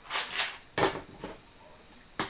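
Two 1.7-litre metal storage tins handled and stacked one on the other: a few short scrapes and knocks of tin on tin in the first second, then a faint one.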